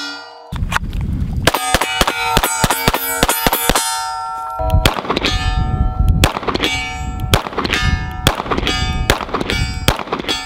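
Rapid pistol fire on a range of steel targets: a quick string of sharp reports, each hit leaving the plates clanging and ringing at different pitches, with a brief lull near the middle.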